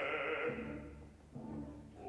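Operatic voices singing with a wide vibrato, the phrase ending about half a second in, followed by low held notes from the orchestra.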